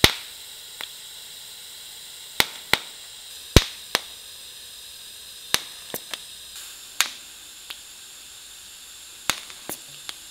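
TIG welding arc held on a tack weld without filler wire: a steady electrical hiss with a faint high whine, broken by sharp, irregularly spaced clicks.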